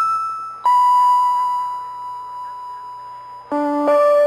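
Slow keyboard melody of single struck notes that ring and fade: one long held note, then lower notes coming in near the end.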